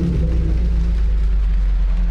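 Deep, steady rumbling drone of film sound design, heavy in the bass, as the higher sounds gradually fade out.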